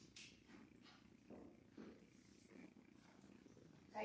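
Near silence: the room tone of a church, with a few faint soft sounds.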